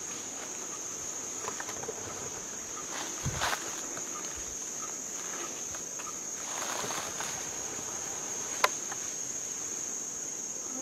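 Steady high-pitched chorus of forest insects, with a few rustles and crunches of movement through the undergrowth and one sharp snap near the end.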